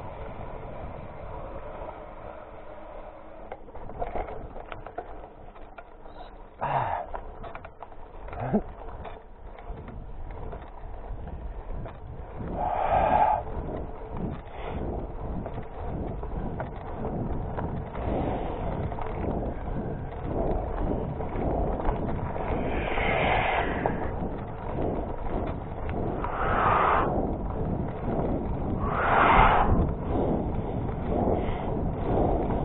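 Hybrid mountain bike riding fast over a dirt and gravel trail: steady tyre rumble and wind on the microphone, with the bike rattling over bumps. Several short, louder rushes of noise come in the second half.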